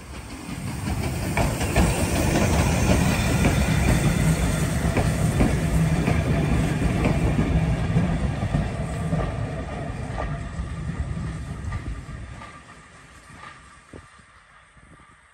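A steam-hauled train of vintage carriages rolling past close by, its wheels clicking over the rail joints over a steady rumble. The sound builds over the first couple of seconds and fades away near the end as the train moves off.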